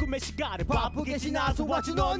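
A man rapping fast over a dark hip-hop beat with a deep, steady bass line, performed live into a studio microphone.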